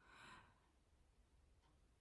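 Near silence, with one faint, short breath near the start.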